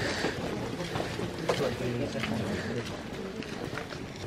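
Indistinct talking from several people walking together, with a few light knocks that may be footsteps.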